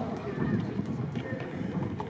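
Distant shouts of footballers calling to each other across an outdoor pitch, a couple of short calls over a steady low outdoor rumble.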